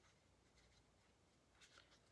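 Near silence: room tone, with a faint brief rustle near the end.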